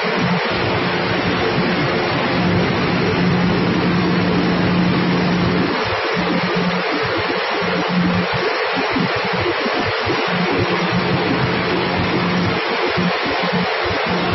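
Grain cleaning machine running: a steady hiss of grain streaming down its chutes onto the screen, over a steady low mechanical hum.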